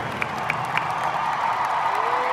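Large arena crowd cheering and applauding steadily.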